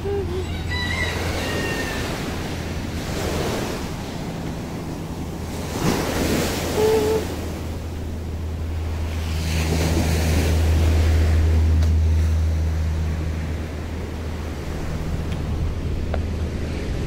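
Outdoor seaside ambience: waves washing onto a beach in slow swells, with wind buffeting the microphone in a steady low rumble that is loudest about two-thirds of the way through. A few short high chirps sound about a second in.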